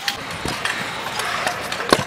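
Skateboard wheels rolling on a concrete skatepark surface, a steady grinding rumble, with a sharp click near the end.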